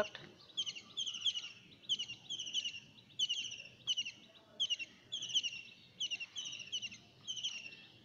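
A bird chirping over and over, short high chirps at about two to three a second.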